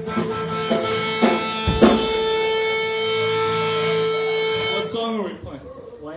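Amplified electric guitar holding one ringing note, which slides down in pitch and fades about five seconds in. A sharp hit comes about two seconds in.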